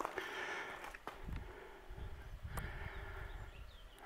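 Faint footsteps on dry dirt and gravel: irregular soft crunches and thuds, with a couple of sharp clicks.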